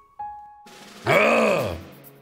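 A man's voice making one drawn-out wordless sound, its pitch rising and then falling over about a second, over soft background music.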